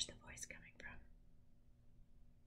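A woman whispering a few words in the first second, followed by quiet room tone.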